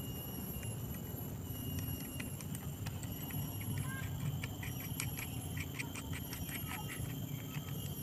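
Scattered light metallic clicks and taps from a socket wrench and the bolt and washers being worked at the hub of a circular brush-cutter blade, irregular and several a second at times.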